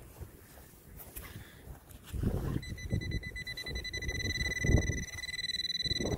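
A metal detector gives a steady, high, unbroken tone from a little past halfway through to the end, the signal that it has found metal under the spot. Under it, a hand digging tool scrapes and knocks in frozen soil.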